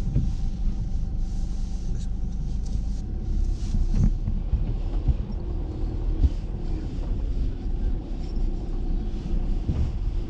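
Car moving slowly across a wet, puddled yard, heard inside the cabin: a low rumble of engine and tyres, with hiss from the wet surface and a few knocks as it goes over bumps.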